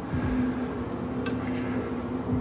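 Steady low hum of a cruise ship's interior machinery and ventilation, with a couple of soft footstep thumps and a faint click a little past the middle.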